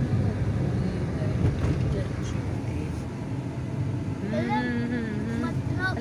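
Steady engine and road noise inside a moving car's cabin. A voice is heard briefly about four seconds in.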